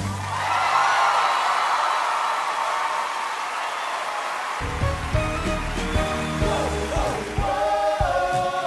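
Theatre audience applauding and cheering after a musical number, a dense even roar. About four and a half seconds in it gives way to soft stage music.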